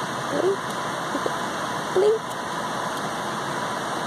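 A baby makes three short babbling sounds, each a brief rising vocal squeak, about half a second, a second and two seconds in. A steady hiss runs underneath them.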